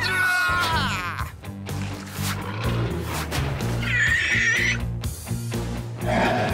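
Background music under cartoon animal cries during a clouded leopard attack on golden snub-nosed monkeys: a wavering, falling screech in the first second and a harsh cry about four seconds in.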